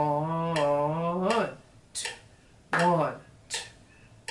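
A man clapping a steady beat, about one clap every three-quarters of a second, while counting the rhythm aloud: the first count is held on one pitch for about a second and a half, then a short count follows near the middle.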